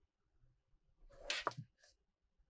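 A smartwatch being handled and set down on a car's wireless charging pad: a brief scraping rustle about a second in, ending in a sharp click.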